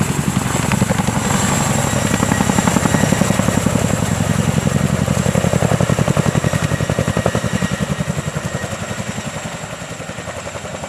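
CH-47 Chinook tandem-rotor helicopter lifting off and flying overhead, its rotors beating in a rapid, even rhythm. The sound fades over the last few seconds as it climbs away.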